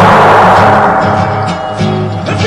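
A loud firing-squad volley whose echo dies away over about a second, over a steady, rhythmic musical accompaniment.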